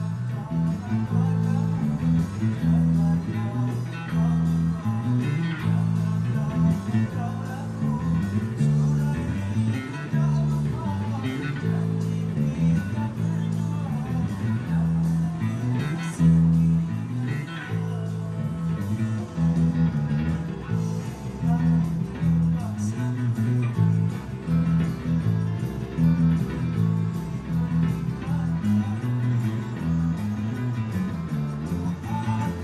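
Electric bass guitar played through an amplifier: a continuous line of plucked low notes that change pitch in a steady, even rhythm.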